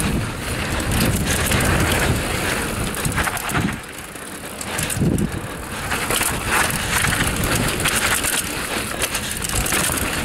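A Raleigh Tekoa 29er hardtail mountain bike descending a dry dirt trail. Its tyres crunch over loose soil and stones, with a constant clatter of knocks and rattles from the unsuspended bike. Wind rushes on the microphone, and the noise eases briefly about four seconds in.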